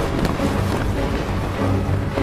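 Orchestral film score holding low, sustained chords, mixed with a steady rushing noise like wind.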